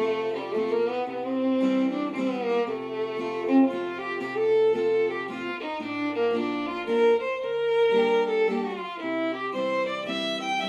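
Fiddle playing a lively melody of quick bowed notes over a strummed acoustic guitar accompaniment.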